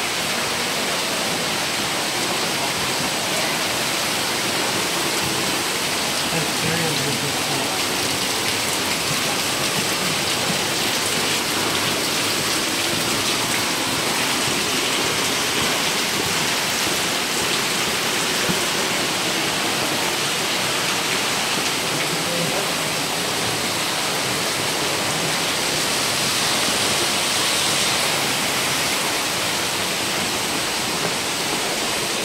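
Steady rushing and splashing of a waterfall pouring into a rock gorge close by, an even hiss that does not let up.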